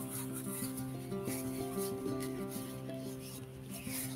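Instrumental backing music of held chords that change about once a second, with a faint scratchy rubbing noise over it.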